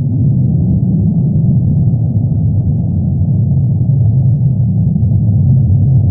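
A loud, steady low rumble with no distinct tones, its weight in the deep bass.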